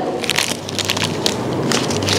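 Thin white paper jewellery wrapper crinkling as it is handled and unfolded by hand: a steady run of small crackles.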